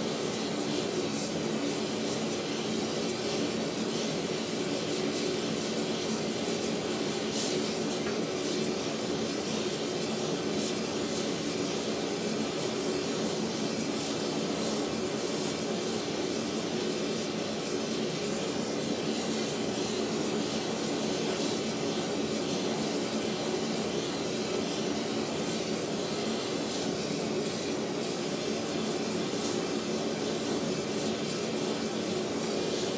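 Steady roar of a gas torch with a multi-flame rosebud heating tip, its flames playing on a steel bar to heat it red. A steady machine hum runs underneath.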